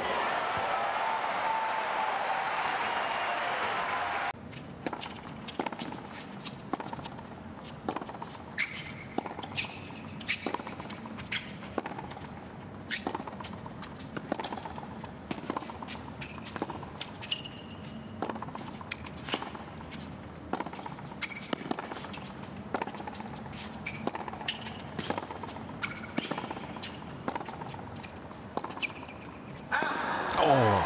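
Crowd noise for about four seconds, cut off suddenly. Then the sounds of tennis points on a hard court: racket strikes on the ball, ball bounces and footwork, with a few brief shoe squeaks.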